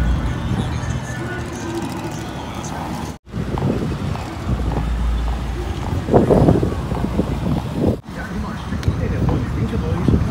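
Street ambience by a busy road: traffic running past with voices in the background, broken twice by sudden cuts. It grows louder for a moment just past the middle.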